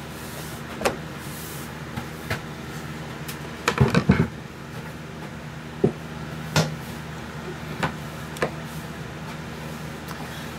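Scattered knocks and clunks of a wooden platter being taken off a wood lathe's chuck and the headstock being handled, loudest as a short cluster of clunks about four seconds in, over a steady low hum.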